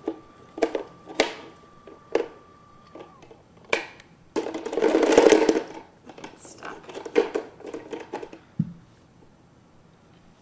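A plastic shape-sorter bucket and its blocks handled on a carpet: a series of sharp plastic knocks and clacks, a longer clattering rattle from about four to six seconds in, then more clacks.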